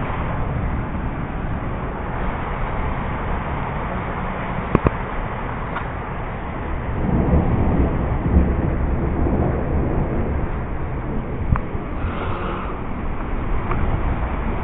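Steady heavy rain, with a low rumble swelling about seven seconds in and a few sharp clicks.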